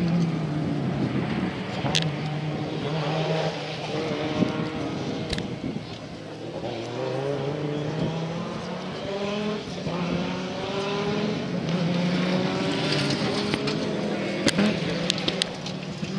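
Audi Sport Quattro S1 rally car's turbocharged five-cylinder engine revving hard and shifting up again and again, the pitch climbing and dropping with each gear change. A few sharp pops stand out in the second half.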